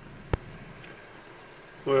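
A faint steady hiss with one sharp click about a third of a second in.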